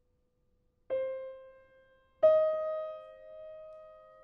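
Grand piano in a slow, sparse contemporary passage: after a near-silent pause, a single note is struck about a second in and dies away, then a louder note just after two seconds is left to ring and fade slowly.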